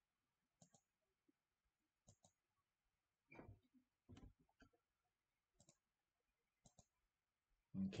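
Faint clicks of a computer mouse button, mostly in quick pairs, a handful of times over near silence.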